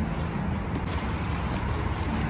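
Road traffic: a steady low rumble of vehicle engines.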